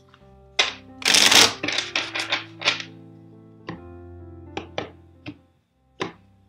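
Tarot cards being handled and laid down on a table. There is a rush of cards sliding against each other about a second in, then a run of sharp card snaps and taps that thin out toward the end, over soft background music.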